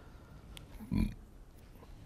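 A man's single brief, low grunt-like throat sound about a second in, against faint room noise.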